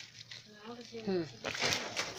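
A woman's short murmured "hum", falling in pitch, with a brief crinkle of a plastic bag of frozen meat being handled near the end.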